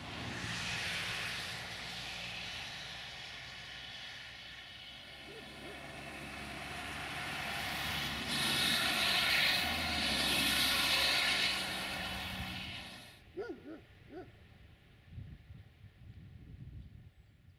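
Diesel train running by: a steady low engine drone under rolling noise that builds, is loudest from about 8 to 13 seconds in, then cuts off abruptly.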